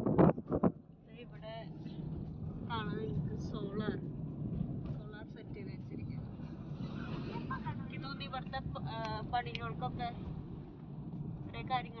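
Steady low drone of a moving road vehicle heard from inside, with wind buffeting the microphone in the first second and voices talking over it.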